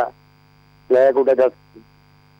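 A steady electrical mains hum on a phone-in caller's telephone line, under a short stretch of the caller's speech about a second in.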